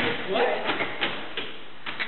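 A voice asks "What?", then several sharp clicks follow, spread through the rest of the second or so, the sharpest near the end.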